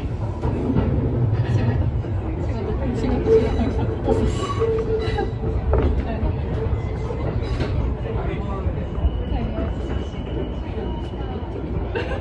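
Electric train heard from inside the front car, running with a low rumble as it slows into a station. A steady tone sounds through the first half, and a thinner, higher steady tone sounds for a couple of seconds near the end, with scattered clicks from the rails.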